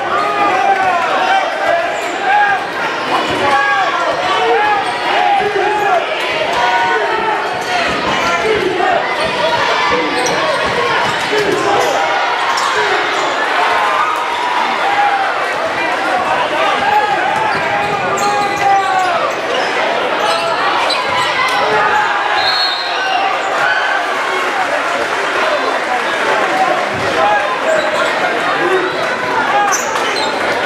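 Basketball dribbled on a hardwood gym floor during live play, under continuous overlapping crowd chatter that fills a large gymnasium.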